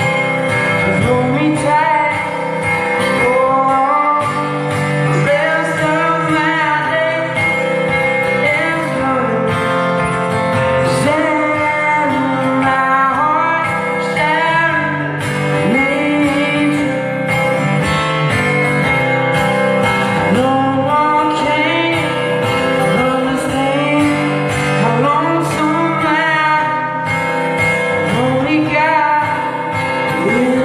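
Live solo performance: an amplified acoustic guitar being played, with singing over it.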